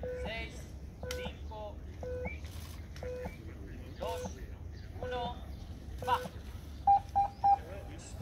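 Course Navette (beep test) signal: short electronic beeps about once a second, then three louder, higher beeps in quick succession near the end that give the start, with voices talking in between.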